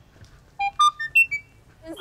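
Gate intercom ringing: a quick electronic melody of about five short beeps climbing in pitch, played once.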